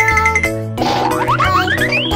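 Children's backing music; from about a second in, a cartoon sound effect of quick glides climbing steadily in pitch plays over it.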